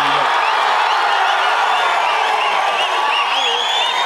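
Large crowd cheering, with many short whistles over a steady din of voices.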